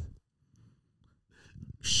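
A pause in conversation: a short, faint intake of breath, then the hissing 'sh' that begins a spoken word near the end.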